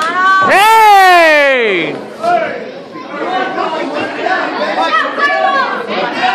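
A loud, drawn-out yell from one voice, its pitch rising briefly and then sliding down over about a second and a half, followed by the chatter of a crowd in a large hall.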